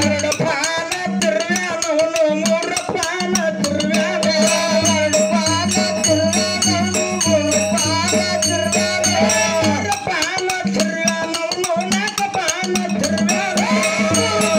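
Kannada folk song (dollina pada) performed live: a wavering sung melody over a steady low drone, with a fast, dense rattling percussion keeping the beat.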